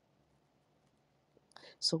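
A pause in speech: near silence for about a second and a half, then a short breath and the spoken word "So" near the end.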